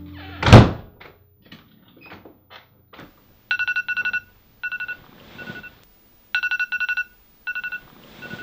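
A door shuts with a loud thunk about half a second in, followed by a few faint knocks. From about three and a half seconds a smartphone rings: repeating clusters of rapid electronic beeps on two pitches.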